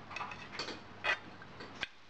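A handful of short clicks and taps of a serving utensil against a ceramic plate as pieces of braised pork are set down on it, the loudest about halfway.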